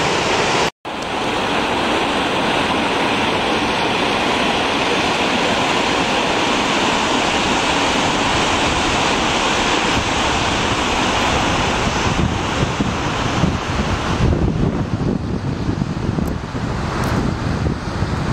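Steady rushing of a glacial meltwater river at the foot of the ice face. Near the end, uneven gusts of wind buffet the microphone.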